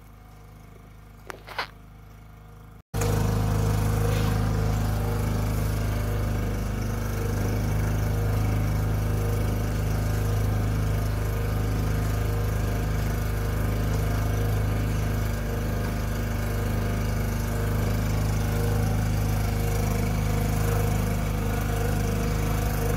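A boat's outboard motor running steadily, heard from on board as a loud, even, low drone. It cuts in suddenly about three seconds in, after a short quiet stretch with a faint low hum and a couple of light clicks.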